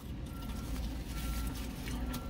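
Low vehicle rumble heard from inside a car, building slightly, with a faint high beep that comes and goes.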